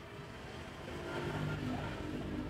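A low engine hum in the background, growing a little louder past the middle.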